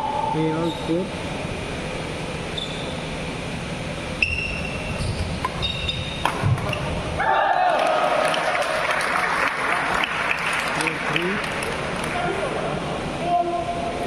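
Badminton doubles rally in a large indoor hall: sharp racket hits on the shuttlecock and brief shoe squeaks on the court. About seven seconds in, the rally ends and the crowd breaks into cheering, shouting and clapping for several seconds.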